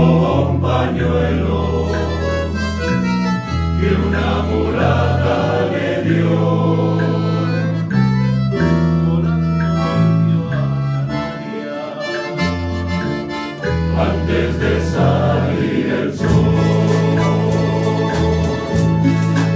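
Male choir singing in harmony, accompanied by accordion, classical guitars and keyboard, over held bass notes that change every second or two.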